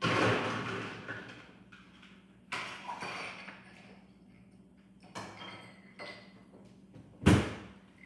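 Ice being put into a glass: rattles and knocks of ice and handling, and a sharp thud about seven seconds in, the loudest sound.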